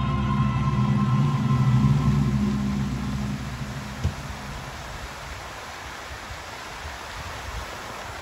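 Music with a held low chord fades out over the first three seconds or so, leaving a steady rush of water from the fountain jets, with a single sharp click about four seconds in.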